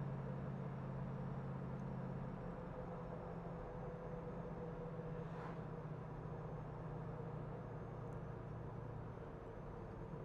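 The Plymouth Cuda's 383 V8 runs steadily with road noise heard from inside the cabin while the car drives along. The engine note eases off slightly about two seconds in.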